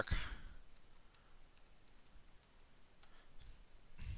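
Faint, irregular clicks of a computer keyboard being typed on, with a louder low thump near the end.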